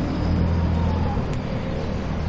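Steady low mechanical rumble with a constant hum.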